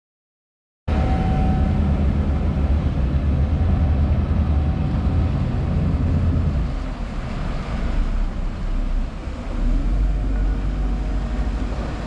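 Cruisers Yachts 50 Cantius motor yacht running on its Volvo IPS pod-drive engines through its own wake, heard as a loud, steady low rumble with water noise. It cuts in abruptly about a second in and eases slightly after about six seconds as the boat pulls away.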